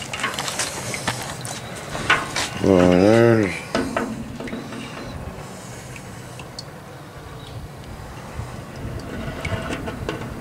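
Scattered light clinks and knocks of metal around a wet cast-iron engine block hanging on a chain. About three seconds in comes one short wavering pitched sound, about a second long, which is the loudest thing heard.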